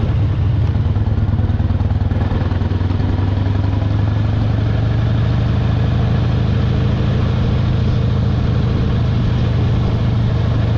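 Custom motorcycle engine running steadily at cruising speed, heard from the rider's seat, with an even hum and no gear changes.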